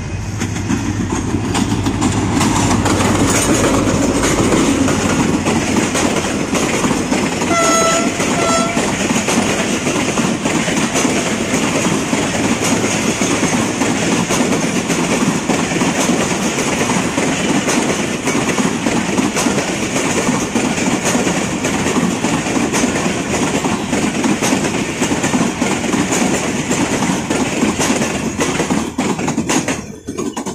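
Diesel-electric passenger train passing close by. Its engine rumble builds over the first few seconds, then the horn gives two short blasts about eight seconds in. After that the coaches roll past with a steady clickety-clack of wheels over the rail joints.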